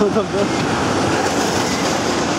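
Steel roller coaster train running along its track, a steady rolling rumble.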